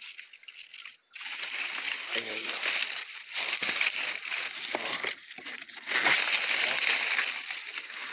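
Footsteps crunching through dry leaf litter and leafy undergrowth brushing against the walker, starting suddenly about a second in and going on in uneven crackling bursts.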